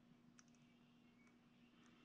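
Near silence: room tone with a faint steady low hum and a few faint clicks.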